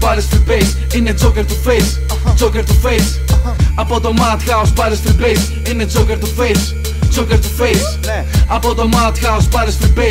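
Hip hop track: rapped vocals over a beat with a held deep bass and drum hits at a steady tempo.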